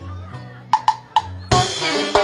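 A folk band with saxophones starting a song: a low bass note, three sharp drum strikes, then the whole band comes in loudly about a second and a half in.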